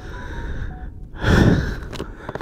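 A person's breathy exhale close to the microphone, one sigh-like rush of air about a second and a half in, over a low steady hiss.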